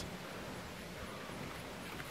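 Faint, steady outdoor background noise with no distinct sounds standing out.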